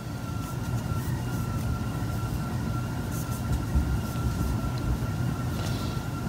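Steady low background hum and rumble with a thin constant high tone, and a few faint soft rustles.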